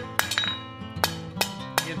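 Forging hammer striking a 3/8-inch square steel bar on the anvil, knocking down the bar's corners: about five sharp, ringing blows at a steady pace, with a short pause near the middle. Background music plays underneath.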